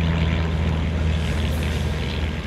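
Small single-engine propeller airplane flying overhead, its engine running steadily with a low hum.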